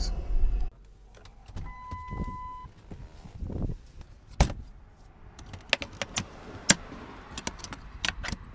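A plastic toolbox full of tools being shut: tools rattling and the lid and latches clicking, a string of sharp clicks and knocks through the second half. Before that a low vehicle rumble drops away under a second in, and a single steady beep sounds for about a second.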